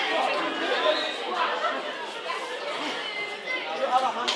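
Spectators in a hall chattering and calling out, many voices overlapping with no single clear speaker.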